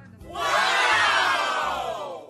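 A crowd of voices shouting together in one long cheer that rises and then falls in pitch, lasting just under two seconds.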